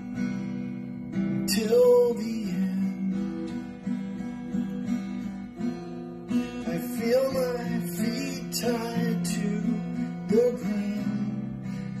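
Music: a song's strummed acoustic guitar accompaniment, playing between sung lines.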